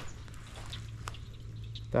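Light rain, with faint scattered drips and patters, over a steady low hum.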